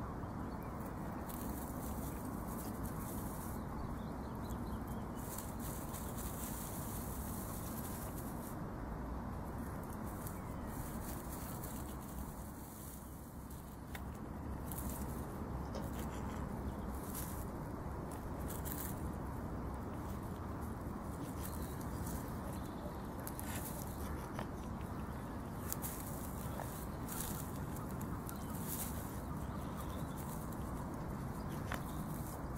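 Mute swan working its nest: dry reed and straw crackling and rustling in short bursts as it moves the stems with its bill, over a steady background hiss.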